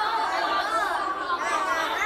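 A group of young children all talking and calling out at once, many high voices overlapping into a steady chatter.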